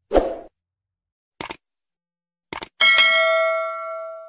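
Animated sound effects: a short pop, a quick double click, then more clicks and a bright bell ding that rings on and slowly fades, the click-and-bell chime of a subscribe-button animation.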